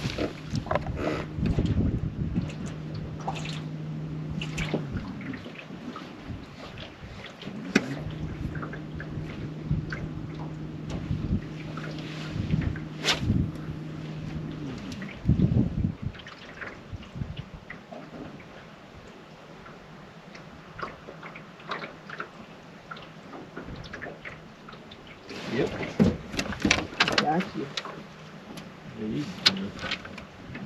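Boat trolling motor humming steadily in two spells, the first about four seconds and the second about seven, each stopping cleanly. Water slops and clicks against the boat, and near the end comes a flurry of splashing and knocks as a crappie is brought to the boat.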